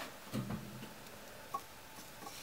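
Quiet room with a single faint tick about halfway through, as a hand takes hold of a paper finger prototype's round mounting piece.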